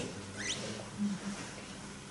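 A brief, high squeak rising in pitch about half a second in, over quiet room tone with a faint steady low hum.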